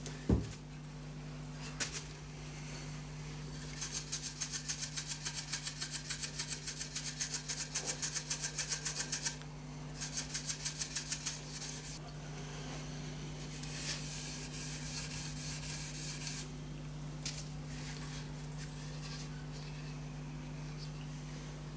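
A grey Scotch-Brite abrasive pad rubbed back and forth along an extruded aluminium edge strip, scouring out handling scuffs to give the metal a more uniform finish. The strokes come quickly and evenly, about five a second, in two runs a few seconds apart, followed by lighter, looser rubbing.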